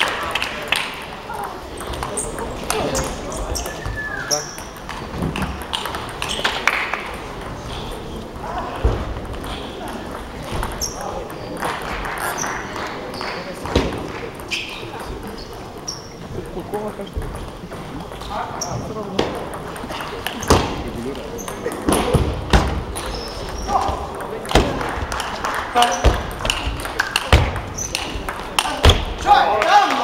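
Table tennis ball clicking on the bats and the table during serves and rallies, in quick runs of sharp clicks that come thicker in the last ten seconds. Spectators talk in the background.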